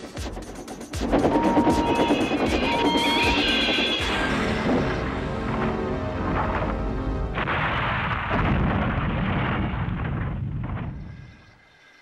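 Steam locomotive train crash sound effects over dramatic music: a heavy crash starts about a second in, with two short high tones early on, and a second wave of crashing and rumbling comes about seven seconds in before dying away near the end.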